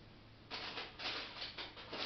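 Plastic grocery packaging crinkling and rustling as it is handled, in irregular bursts beginning about half a second in.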